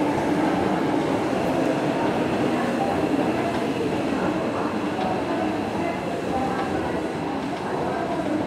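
Hankyu 5100 series electric train pulling out of the station, its running noise steady as it moves away.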